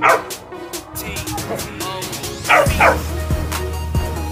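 A dog barks three times: once at the start, then twice in quick succession about two and a half seconds in, each bark falling in pitch. Background music with a steady beat plays under it.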